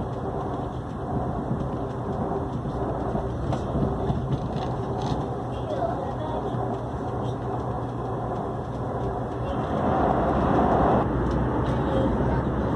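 Hyundai Rotem AREX 1000 Series electric train running at speed on an elevated track, heard from inside the passenger car as a steady rumble and rush of wheels and running gear. The sound grows louder about ten seconds in.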